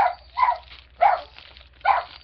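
A dog barking four times, with short separate barks spread over about two seconds.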